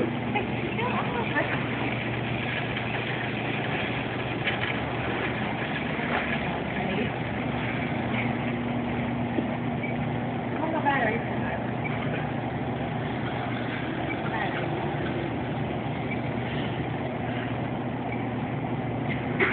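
Steady low electrical hum of supermarket ambience, with faint background voices now and then.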